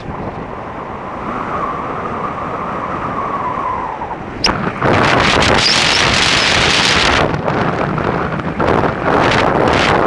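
Wind rushing and buffeting over the microphone of a camera on a bicycle coasting fast downhill on asphalt. The first few seconds are calmer, with a faint steady whine; about five seconds in the wind noise comes back loud and gusty.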